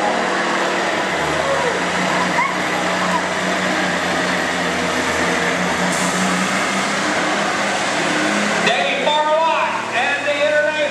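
Stock semi truck's diesel engine pulling a sled at full throttle, a loud steady drone that holds one pitch. It eases off near the end, where a voice takes over.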